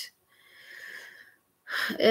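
A woman drawing an audible breath in, about a second long and soft, followed by a brief louder hiss near the end.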